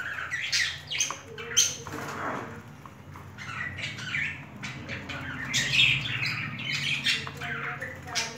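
Budgerigars chattering: a busy run of short squawks and chirps, one after another, thickest in the last few seconds.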